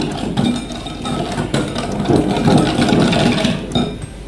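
Metal wire whisk beating a yolk, sugar and cornstarch batter in a glass bowl: a steady, rhythmic clatter of the wires against the glass.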